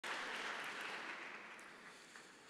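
Audience applause, fading away.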